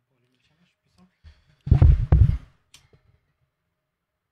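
Handheld microphone being lifted off its stand and handled, a loud thumping rustle lasting about a second in the middle, followed by a short sharp click.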